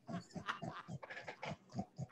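Quiet, breathy laughter: a rapid, irregular run of short gasping breaths.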